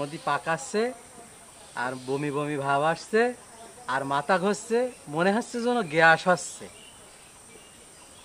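A man speaking in Bengali in several short phrases through the first six and a half seconds, then a pause, with a faint steady high-pitched hum underneath.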